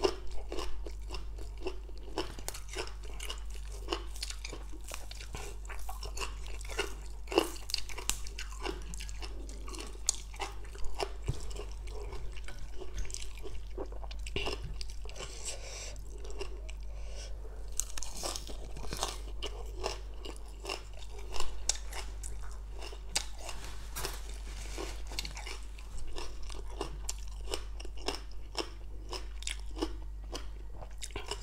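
Close-miked chewing and crunching of spicy green papaya salad and raw greens: a continuous wet, crisp crackle of bites, with a few louder crunches along the way.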